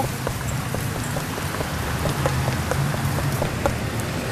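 City street traffic: a steady wash of road noise with a low engine hum from passing vehicles, and faint short ticks a few times a second.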